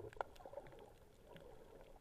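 Faint underwater ambience heard through an action camera's waterproof housing: a muffled wash of water with scattered small clicks and crackles, one sharper click just after the start.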